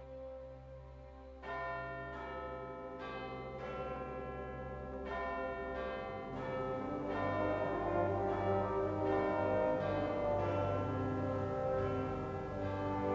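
Church bells ringing: a run of overlapping struck notes that starts about a second and a half in and grows louder, over a low steady drone.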